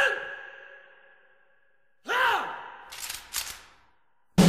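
Military drill commands shouted with heavy echo: the tail of a drawn-out "Present!" fades away, then "Arms!" is barked about two seconds in. A quick few sharp clicks follow near the end, as of rifles brought to present arms.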